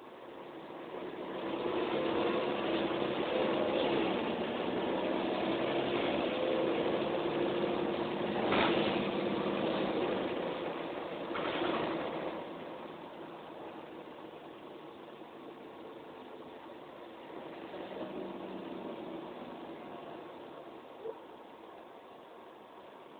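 Mercedes-Benz O405N single-deck bus heard from inside the passenger saloon, its engine building up under acceleration for about ten seconds. It then drops back as the bus eases off, with a smaller rise again near the end.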